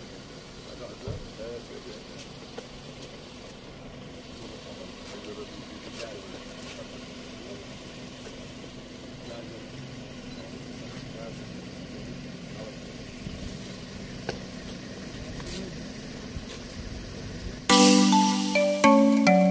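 Indistinct voices of a small group of men greeting one another, over a steady low hum from an idling car engine. A loud chiming tune starts right at the end.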